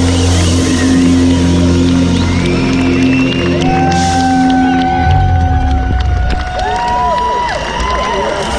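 Live band holding a low sustained chord that ends about six seconds in, with a festival crowd cheering and whooping over it and on after it stops.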